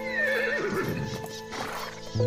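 A horse whinnies: one call that falls in pitch with a wobble over about the first second, over background music with held notes. A short rushing noise follows near the end.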